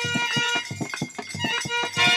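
Instrumental folk accompaniment for birha singing, with no voice: a quick run of hand-drum and clapper strikes under fading held harmonium tones.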